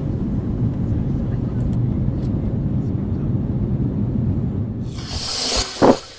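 Cartoon sound effect of a jet aircraft: a steady low engine rumble. About five seconds in, a loud rushing hiss builds to a brief heavy hit as the jet crashes into the ground, then the sound cuts off suddenly.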